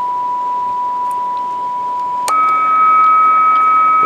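A CB radio's speaker (Lescom LC995 V2) playing a steady test tone from an S9 test signal on AM, over background hiss. A little over two seconds in there is a click as the receiver is switched to sideband, and the sound becomes a slightly higher, louder tone with a low hum beneath it.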